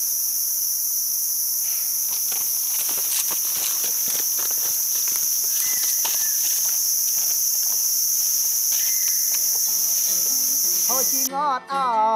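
Steady, high-pitched chorus of insects droning without pause in dry forest. Near the end it cuts off suddenly and plucked-string music begins.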